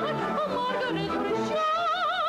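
Operatic soprano singing high, with a wide vibrato, over instrumental accompaniment, settling into a long held high note about three-quarters of the way through.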